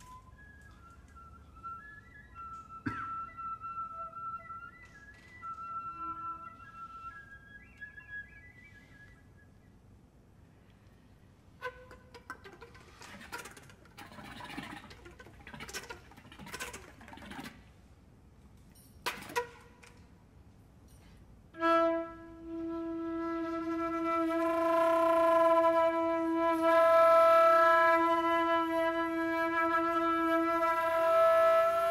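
Contemporary chamber music led by a concert flute: soft, scattered high held notes, then breathy air-noise sounds with a sharp click, and from about two-thirds of the way through a loud sustained tone rich in overtones that swells and holds.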